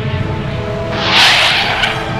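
Fighter jet fly-past: a loud rushing whoosh swells about a second in and fades quickly, over a steady orchestral music bed.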